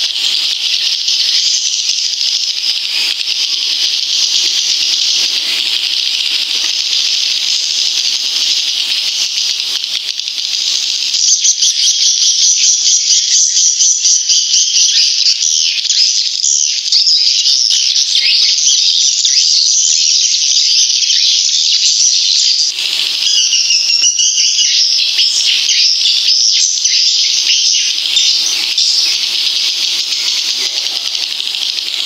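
Swiftlet calls: a dense, continuous high-pitched chirring twitter, of the kind played from a swiftlet-house lure recording to draw the birds in to nest. It grows louder about eleven seconds in.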